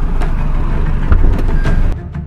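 Car engine running, a loud steady low rumble that cuts off suddenly at the end.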